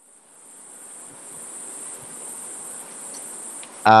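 Noise coming through a participant's unmuted microphone on an online video call, which the tutor calls a lot of noise. It is a steady high-pitched whine over a soft hiss that swells over the first second or so, and it stops just before the end.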